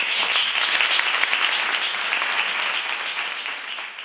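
Applause from a room of people and panelists, a dense steady clapping that starts to taper off near the end.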